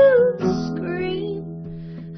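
A woman singing with acoustic guitar: she holds a long note that glides down and ends just after the start, and the guitar plays on, getting quieter.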